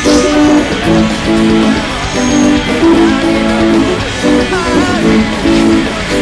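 Barclay electric guitar playing rhythm chords in a steady pattern along with a rock song recording.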